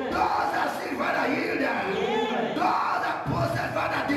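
A man's voice shouting fervent prayer into a microphone, in loud, unbroken phrases without clear words.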